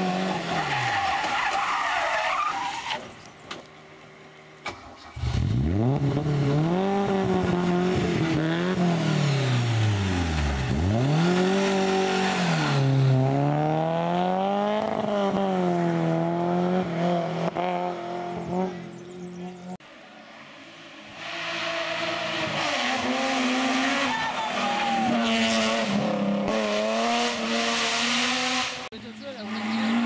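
A small rally car's engine revving hard through bends, its note repeatedly climbing and falling as it brakes, shifts down and pulls away again. The sound dies down briefly twice, about three seconds in and about twenty seconds in.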